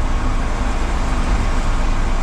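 Truck engine idling, a steady low rumble heard from inside the cab.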